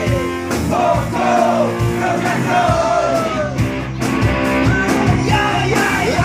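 Live rock band playing loudly: electric guitars, bass and drums, with several men singing and shouting the vocal line together at the microphones.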